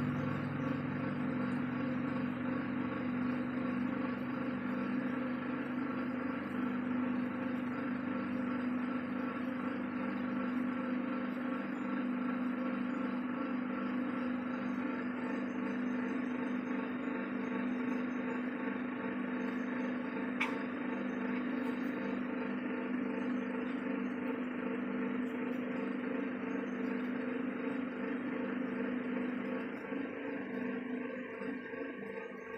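Electric potter's wheel motor humming steadily as it spins, a constant drone of several held tones. A single sharp click sounds about two-thirds of the way through.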